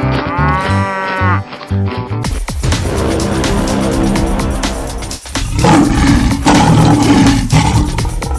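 A cow mooing once, one long call that rises and falls, over background music with a steady beat. After about two seconds the sound changes to lions roaring and growling over the music, loudest in the last couple of seconds.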